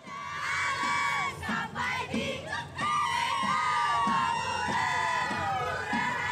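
A Saman dance troupe chanting and calling out together, several voices holding long calls that slide down in pitch, with sharp claps or body slaps.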